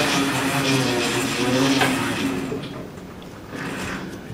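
A muffled voice with a haze of room noise, dying away about two and a half seconds in.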